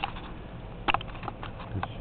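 Running HHO electrolysis cell, gas bubbling through the electrolyte under about 11 amps. It makes faint, irregular clicks and pops over a low steady hiss.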